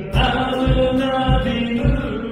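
A live worship song: a man sings the melody, backed by guitar and keyboard, over a steady low beat.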